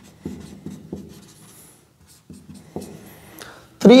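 Handwriting: a run of short scratchy writing strokes, several a second, with a brief pause about halfway through.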